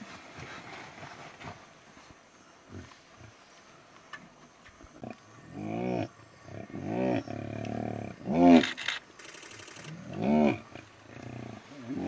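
Lions growling and snarling while feeding on a kill, typical of lions warning each other off a carcass. After a quieter start comes a run of about six short growls from about halfway through, each rising then falling in pitch; the loudest is about two-thirds of the way in.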